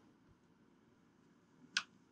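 Near silence with one short, faint click near the end.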